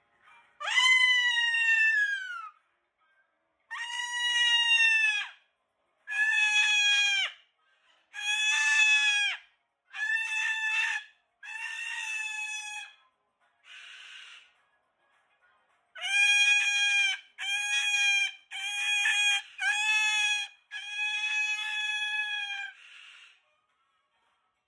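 Moluccan cockatoo screaming: about a dozen loud calls, each a second or so long, the first falling in pitch and the rest held level, with a couple of softer, hoarser ones between.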